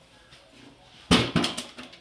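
A small bowling ball knocking over a set of toy bowling pins: a short clatter of several knocks about a second in, as six of the pins go down.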